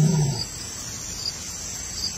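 A large wild animal's low call, falling in pitch and dying away in the first half-second, over a steady high chorus of night insects with regularly repeated chirps.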